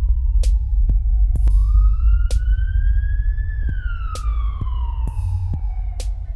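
A wailing siren whose pitch falls, climbs again from about a second and a half in, then falls slowly, over a loud low drone, with sharp clicks scattered through it.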